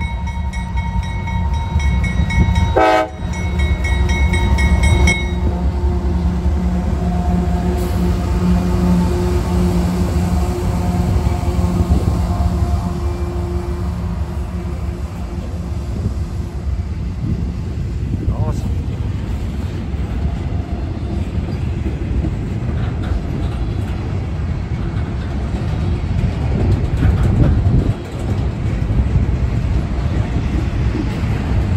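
CSX freight locomotive horn held as a salute, stopping about five seconds in. Then the diesel locomotives' engines drone past, followed by the steady wheel noise of double-stack intermodal container cars rolling by.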